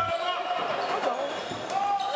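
A handball bouncing on an indoor court floor, with players' voices echoing in the sports hall.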